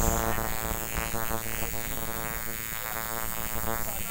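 Tattoo machine buzzing steadily while needling skin, one even pitched drone.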